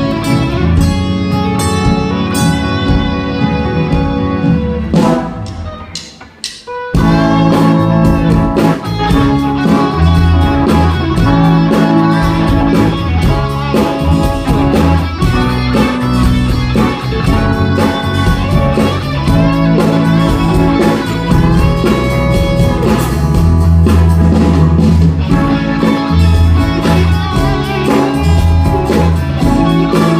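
Live band playing amplified, guitar-led music with drums. The music thins almost to a pause about six seconds in, then the full band comes back in.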